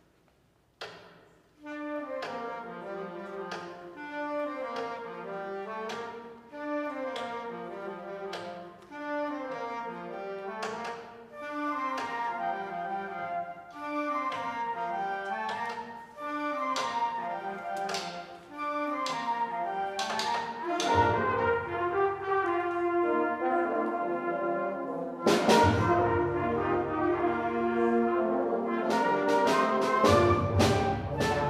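Concert band: a steady click of a bass drum mallet on the bass drum's rim, imitating canoe paddles knocking the side of a canoe, opens alone and then keeps the beat under brass playing a brisk melody. The full band with low brass comes in about two-thirds of the way through and grows louder near the end.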